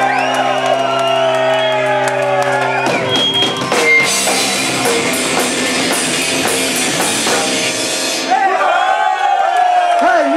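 Live punk rock band playing loud: a held guitar chord rings under shouted vocals, then drums and cymbals crash for several seconds, and a man's voice shouts over the band near the end.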